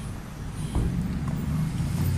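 Street traffic: a car engine running nearby, a low hum that grows louder from about a second in.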